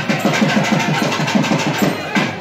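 Procession drums beating fast and evenly, about six beats a second, over the hubbub of a dense crowd.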